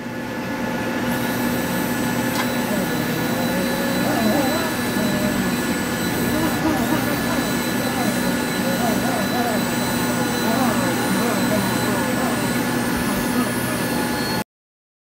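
Rotary polisher with a wool buffing pad running steadily on solid black car paint, cutting out wash swirls. Its whine wavers up and down in pitch as the pad is pressed and worked across the panel.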